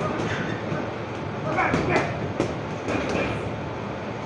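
Irregular thuds of punches landing on heavy bags over the steady din of a busy boxing gym.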